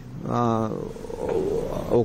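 Speech only: a man's voice says a short syllable, then holds a long, wavering 'aah' of hesitation before going on.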